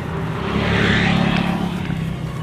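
A motor vehicle passing close by on the road, its engine and tyre noise swelling to a peak about a second in and then fading.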